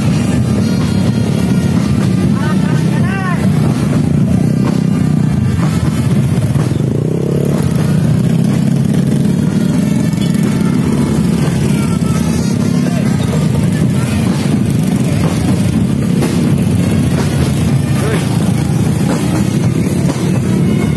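Motorcycle engines running at low speed close by, mixed with people talking in a crowd, with drum-band music in the background.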